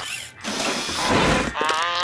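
Cartoon sound effects for a small robot like WALL-E: mechanical whirring and ratcheting, then a short wavering, pitched vocal sound near the end.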